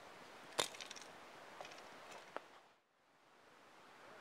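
Faint handling of pole fishing tackle: one sharp click about half a second in, then a few lighter clicks and taps.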